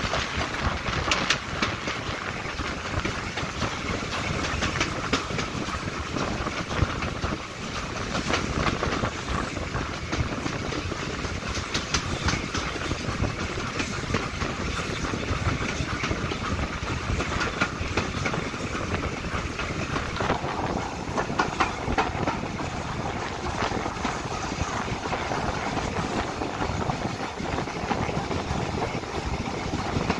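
Steam train under way, heard from the first carriage behind the tender of BR Standard Class 4MT 4-6-0 No. 75014: a steady running noise with the wheels clicking over the rails.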